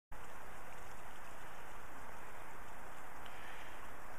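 Steady, even rushing noise of running water, without change or break.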